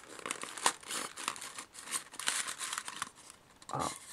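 Tissue paper crinkling and rustling as a model locomotive is lifted out of its foam box packaging: a dense run of small crackles that eases off about three seconds in.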